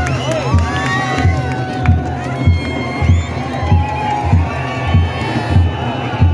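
A large festival crowd shouting and cheering, with a deep drum beating steadily underneath, about one and a half beats a second.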